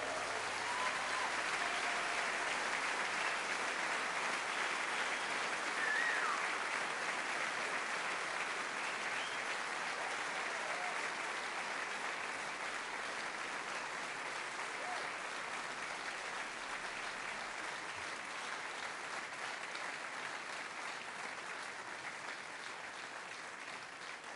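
A concert audience applauding after a song ends: dense, steady clapping that slowly dies down, with a few voices calling out above it.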